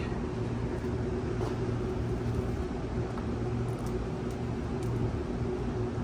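Steady low mechanical hum of a parking garage's background, with a few faint light clicks from handling the light tube and wiring.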